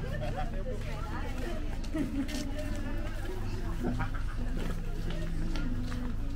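Passers-by talking and chattering among themselves, over a steady low hum.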